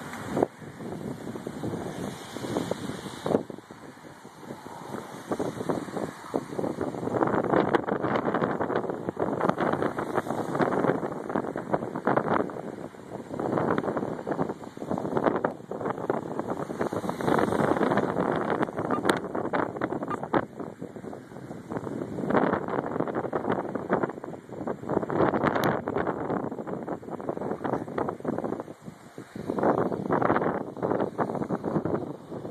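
Wind buffeting a phone's microphone in uneven gusts that swell and fade, heavier from about a quarter of the way in, with brief crackles.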